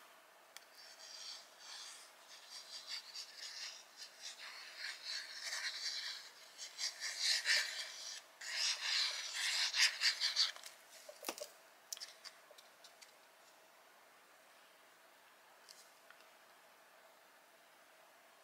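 Needle tip of a precision glue bottle scratching and rubbing across the back of a cardstock cut-out as glue is traced on, in soft uneven strokes. The strokes stop about eleven seconds in with a single small knock.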